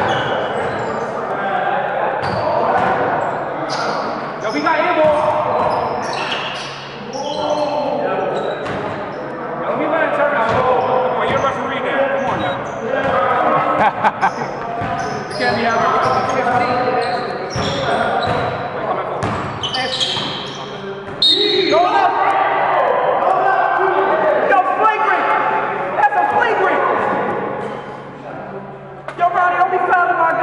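Basketball bouncing on a gym floor during play, in repeated sharp thuds, with players' voices and calls echoing in the hall.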